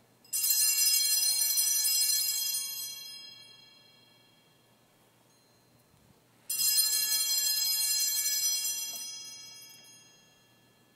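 Altar bells rung twice, each ringing a cluster of bright, high tones that starts suddenly, holds for about two seconds and fades away; the first comes a moment in, the second about six and a half seconds in. They mark the elevation of the chalice at the consecration of the wine at Mass.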